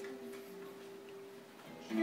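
Live acoustic-duo music: a quiet held chord of several steady tones, then a louder chord comes in right at the end as the song starts.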